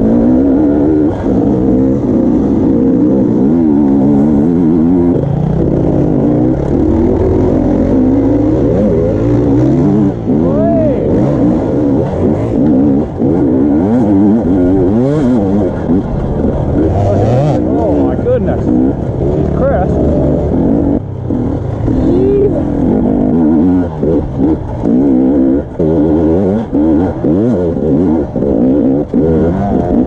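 Dirt bike engine running close up, under load on a rough hill climb, its revs rising and falling continually. In the second half the throttle is chopped and reopened more often, giving frequent short drops in the sound.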